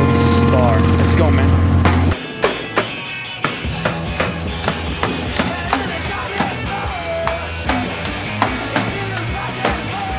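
Loud bass-heavy music for about two seconds, cut off suddenly; then a marching snare drum struck in irregular hits, with voices in the background.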